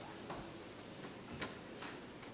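Faint background noise in a large room, with a few short, sharp clicks, the clearest about a second and a half in.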